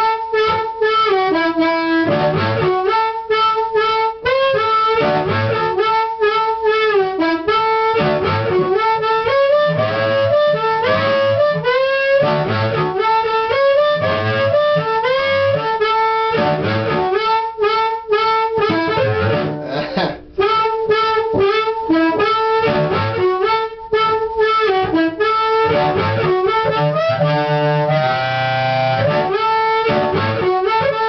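Amplified blues harmonica in D played fast into a tightly cupped handheld mic, through a homemade 25 W solid-state harp amp built around an LM1875 chip amp with a Tweed-style dirty preamp. Quick single notes and bends run on with a brief break about twenty seconds in and a fuller chordal passage near the end.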